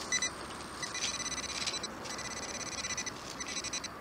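Metal detector target tone: a high, rapidly pulsing buzz that sounds in stretches with brief breaks as the detector sits over a buried coin, which the detectorist takes for a quarter.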